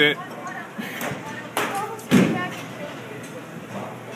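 Two sharp knocks about half a second apart from a baseball in a batting cage, the second the heavier thud, over background voices.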